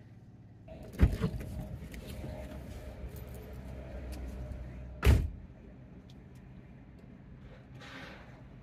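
Low rumble of a minivan heard from inside the cabin, with a sharp thump about a second in and another loud thump about five seconds in, after which the rumble drops away.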